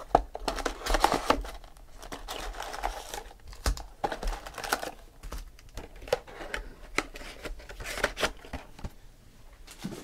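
Trading-card box wrapping and foil packs being torn open and crumpled by hand: irregular crinkling and tearing with sharp crackles throughout.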